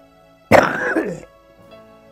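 An elderly man coughs once, a single harsh burst about half a second in, over soft background music.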